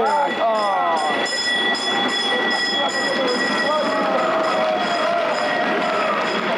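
A tram running past close by on its rails, with people shouting and cheering over it.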